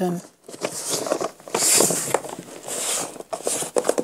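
A hard plastic food-storage container being handled, with its lid and handles rubbing and scraping in uneven rustles that come and go.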